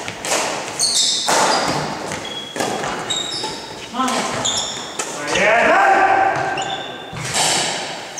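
Badminton doubles play in a sports hall: sneakers squeaking and thudding on the wooden floor and racquets striking the shuttlecock, with short squeals scattered through and players' voices around the middle, all with a hall echo.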